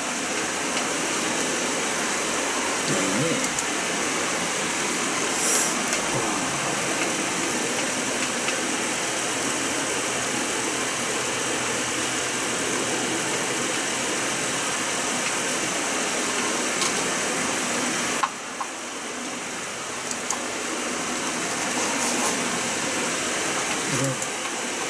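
A steady, even hiss-like whir at about the level of speech, with faint voices under it. It drops suddenly about eighteen seconds in and builds back up over the next few seconds.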